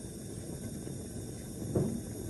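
A bottled-gas Bunsen burner flame running steadily, a low rushing noise, as it heats a test tube of boiling water.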